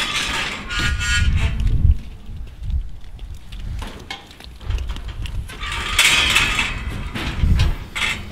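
Sheep crowding into a steel livestock handling chute: irregular knocks and rattles of hooves and bodies against the metal panels and gates, louder around six seconds in.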